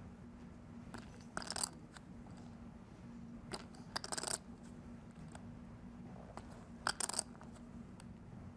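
Poker chips clicking and clattering together in about four short bursts, over a faint steady low hum.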